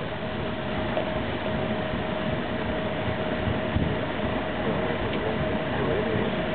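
Paddle steamer under way: steady churning and machinery noise from the PS Waverley's paddles and engine, with a thin steady hum running through it.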